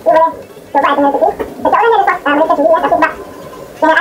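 A voice singing or humming a tune in short phrases about a second long, with held, wavering notes and brief pauses between them.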